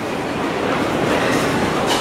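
Steady rushing background noise of a busy hawker food centre, growing a little louder, with no clear voice or single event standing out.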